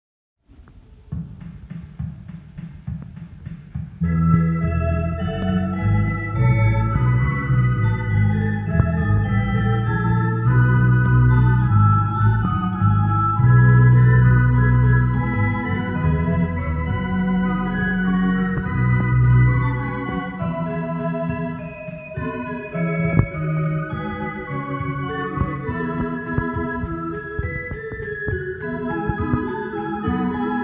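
Two-manual electronic organ with pedalboard playing sustained chords over a bass line. It opens quietly with low bass for the first few seconds, and the full chords come in about four seconds in.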